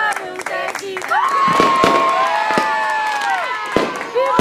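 Hand clapping and voices, then about a second in a fireworks sound effect: several whistling rockets gliding up and falling away in pitch, with a few sharp cracks among them.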